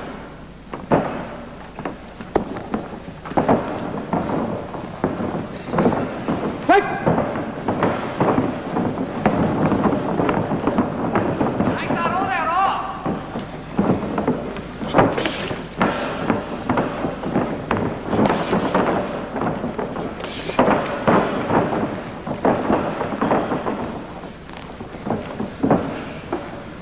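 Arena crowd noise: a steady din of spectators with scattered shouts and calls. Single loud wavering yells stand out about 7 and 12 seconds in.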